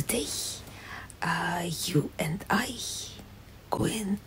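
A woman speaking in a whisper, close to the microphone, with a few syllables voiced aloud.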